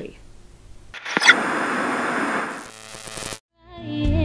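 Burst of TV-static noise from a glitch transition effect, starting about a second in with a sharp click, thinning to a high hiss and cutting off abruptly. After a moment of silence, music begins just before the end.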